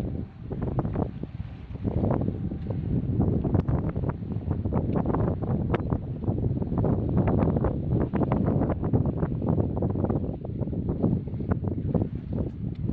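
Wind buffeting the microphone: a steady low rumble broken throughout by many irregular gusts and crackles.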